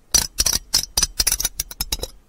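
Close-miked ASMR trigger sounds: a quick, irregular run of crisp clicks and taps, about a dozen in two seconds.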